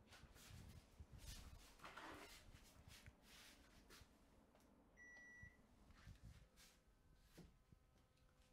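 A wall-mounted split air conditioner gives one short high beep about five seconds in as it takes the remote's off command. Around it, faint rustles and knocks of the handheld microphone being carried and handled in a quiet room.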